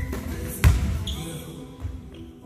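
Basketball bouncing on a gym floor: a loud bounce about two-thirds of a second in, with fainter bounces at the start and near the end.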